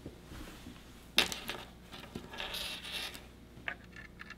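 Thin electroacupuncture clip-lead wires being handled and untangled by hand, with a sharp click about a second in, soft rustling later and a few small ticks near the end.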